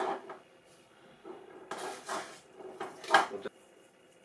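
Handling sounds as a spoonful of powdered reducing agent goes into a glass jug of indigo dye bath: a short rustle about two seconds in, then a single sharp knock a second later.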